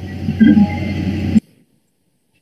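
Open call microphone carrying a steady low electrical hum and muffled low room or mouth noise, which cuts off abruptly about one and a half seconds in, as when the line is muted or gated.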